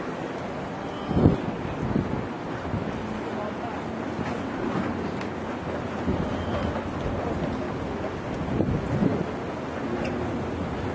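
Wind buffeting the camera microphone over steady city street noise of traffic, with stronger gusts about a second in and again near the end.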